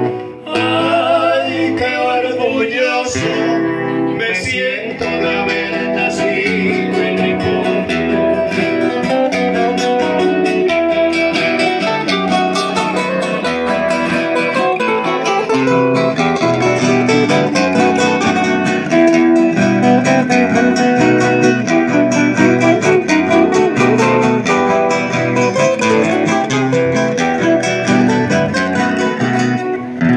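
A live trio of acoustic guitars playing together, a steady strummed and picked accompaniment under a melody line.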